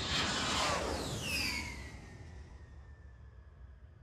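Logo-sting whoosh sound effect: a rushing swell with several falling whistle-like tones, peaking in the first second and a half and then fading away.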